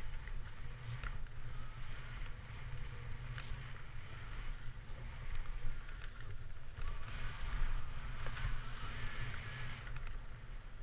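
Skis sliding and hissing through soft snow on a descent, with wind buffeting the helmet camera's microphone as a steady low rumble.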